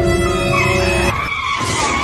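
Car tyres screeching in a hard skid under sudden braking: a sustained squeal that holds steady for about a second, then wavers in pitch.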